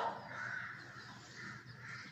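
Faint calls of a bird, heard twice, about a second apart.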